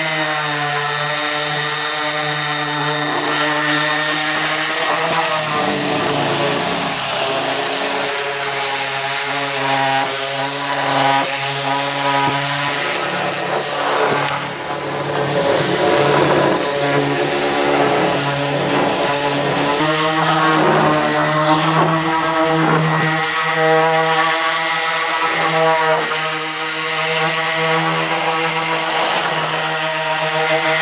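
Electric random orbital sander running continuously while lightly scuff-sanding a Douglas fir board, its hum wavering in pitch as it is pressed and pushed along the wood.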